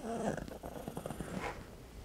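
Chihuahua giving a quiet, low rumbling growl as its sore front left shoulder is pressed: a warning just before it bites.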